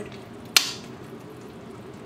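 Metal spoon stirring shrimp in sauce in a stainless steel frying pan, with one sharp clink of spoon against pan about half a second in, over a faint steady sizzle of the sauce cooking.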